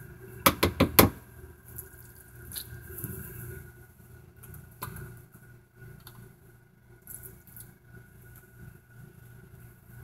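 A spoon tapping and scraping as ground taco meat is spooned onto a plate of tortilla chips: a quick run of sharp taps about half a second to a second in, then only faint soft scrapes and clicks over a faint steady hum.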